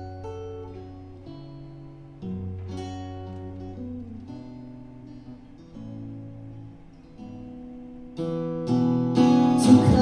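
Acoustic guitar played slowly, single plucked notes and low bass notes ringing out one after another. About eight seconds in the playing grows fuller and louder, and a voice starts singing near the end.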